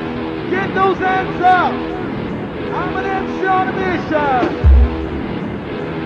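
Early-1990s rave music from a DJ set tape recording, dull with the top end cut off: sustained synth chords under a voice and repeated falling pitch slides, with a deep bass hit about three-quarters of the way through.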